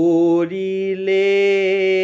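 A man singing a melody line in long held notes, stepping up in pitch shortly after the start.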